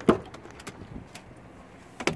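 2011 Ford F-150 pickup's door handle pulled and latch releasing with one sharp clack as the door opens, followed by a few faint small clicks.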